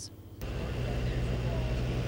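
A steady low mechanical hum with a hiss over it, an outdoor background picked up by the reporter's live microphone. It starts abruptly about half a second in as the sound cuts from the taped report to the live feed.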